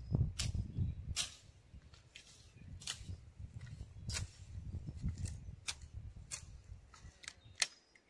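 Machete chopping brush and ferns: a series of sharp strikes at an irregular pace, roughly one or two a second, over a low rumble.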